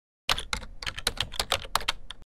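Sound effect of typing on a computer keyboard: a rapid run of keystrokes beginning a moment in.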